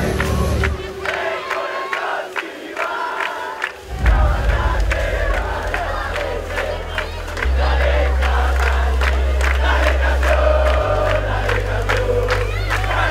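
A crowd of football fans cheering and chanting over music with a deep bass line. The bass drops out about a second in and comes back with a loud hit at about four seconds.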